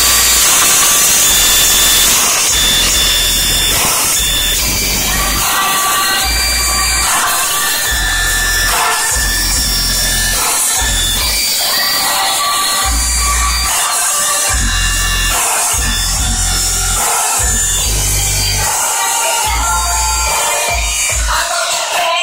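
Music played loud through a homemade shopping-cart car-audio rig: a Kenwood 12-inch subwoofer in a wooden box, a Kenwood 5-inch speaker and a Pioneer tweeter, driven by a Rockford P300 amp and a JVC head unit. Deep bass notes come and go with the beat under the rest of the track.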